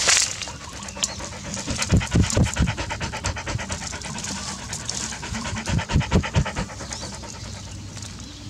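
Dog panting fast and evenly while it works at a burrow hole, with dull low thumps in two short clusters, about two seconds in and about six seconds in.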